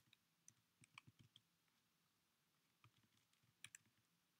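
Faint, scattered clicks of computer keys, a quick run of taps in the first second and a half and a few more near the end.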